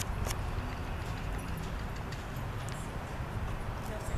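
Outdoor background: a low, steady rumble with a few faint, sharp clicks scattered through it.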